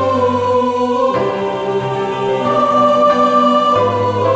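Mixed church choir with piano singing a Korean sacred anthem in all parts, holding long sustained chords that change about a second in and again near the end.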